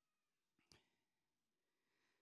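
Near silence, with only a very faint click.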